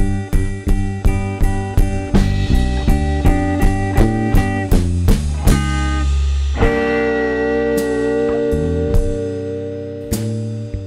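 Live electric blues: electric guitar and bass guitar playing with a steady pulse of about three beats a second. A little past halfway a long held note rings out for about three seconds before the beat returns.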